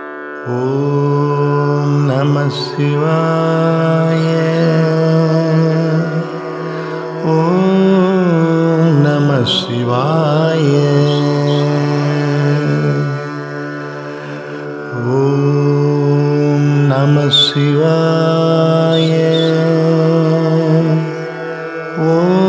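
Tamil Carnatic-style devotional music to Shiva: long held melodic phrases in a chant-like manner, three of about six seconds each, with short dips between them.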